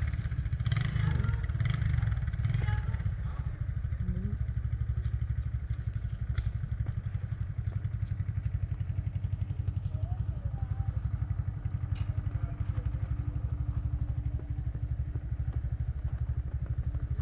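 Small gas minibike engine running steadily at low speed, a fast even putter with no revving.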